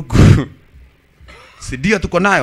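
A person's short, loud, rasping vocal noise in the first half-second, then speech from about a second and a half in.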